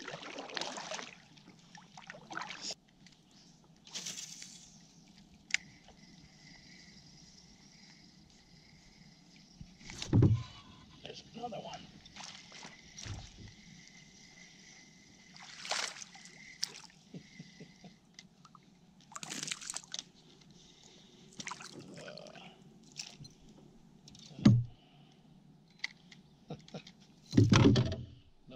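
Kayak paddle strokes and water sloshing against the hull, then scattered knocks and splashes as a small largemouth bass is reeled in and landed; the loudest splashes come near the end. A faint thin high tone holds for several seconds in the middle.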